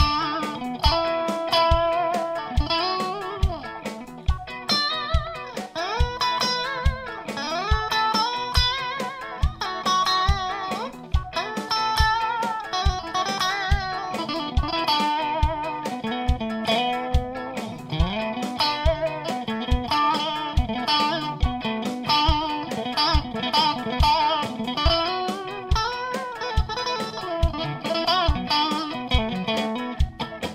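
Electric guitar, a Stratocaster-style solid body, playing a lead line full of vibrato and string bends over a backing track with a steady beat of about two hits a second.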